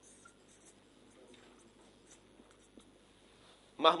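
Faint scratching of a marker pen on a whiteboard in short strokes as a word is written. A man's voice starts right at the end.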